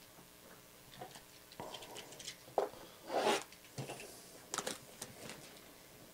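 Handling noise from a box being moved about on a table: irregular rustles, scrapes and light taps, loudest about three seconds in.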